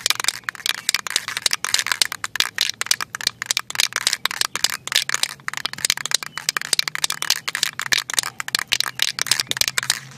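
Aerosol can of general-purpose spray paint being shaken hard, its mixing ball rattling inside in a fast, unbroken stream of clicks, mixing the paint before spraying.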